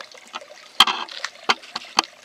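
A few sharp plastic clicks and knocks, the loudest about a second in, with light rustling between them, as small plastic plant pots are handled and set down on concrete.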